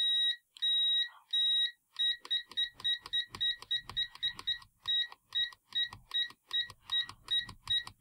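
Continuity-test beeper of a Venlab VM-200M multimeter as the probes are touched on and off a component: three longer beeps, then short high beeps at about four a second. At this fast tapping rate some touches are missed and give no beep, though the beeper still responds quickly.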